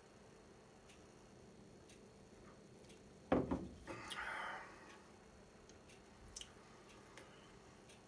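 A glass swing-top bottle set down on a bar top with one sharp knock about three seconds in, followed by a short breathy noise and a few faint ticks.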